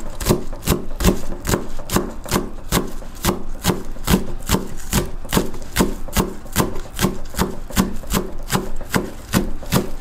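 Kitchen knife chopping vegetables on a wooden cutting board in a steady rhythm of about four cuts a second.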